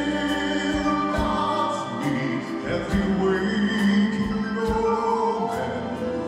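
Live concert recording of a Broadway medley: singing in long held notes over band and orchestra accompaniment.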